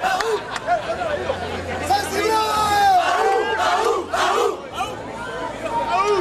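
A crowd of people shouting and talking over one another, several voices at once with a few long held shouts.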